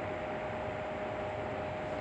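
Steady background hiss of room and recording noise, with a faint steady tone running through it.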